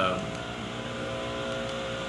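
Steady mechanical hum made of several held tones, running evenly through the pause. The tail of a man's drawn-out 'uh' fades out in the first moment.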